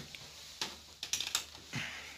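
A handful of light, sharp clicks and taps from hands handling the opened LCD TV's metal chassis and parts, most of them in the second half.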